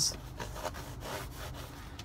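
Cardboard packaging of a boxed letterboard rubbing and scraping against hands as it is handled, an irregular scratchy rustle.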